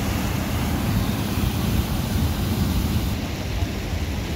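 Steady rush of fast-flowing mountain stream water with a constant deep rumble.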